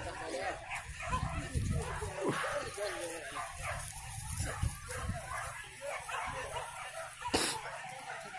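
Hunting dogs barking and yelping among people's voices. A sharp crack comes about seven seconds in.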